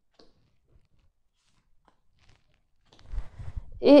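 Oracle cards being laid on a cloth-covered table: a few faint taps, then about a second of louder rustling and low thuds near the end as the cards are handled.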